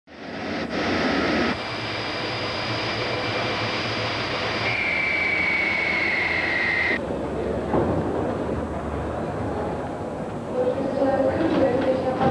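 Airport noise: a steady roar with a high jet-engine whine from an airliner at the gate, the whine falling slightly in pitch and cutting off about seven seconds in. A lower rumble follows, with voices near the end.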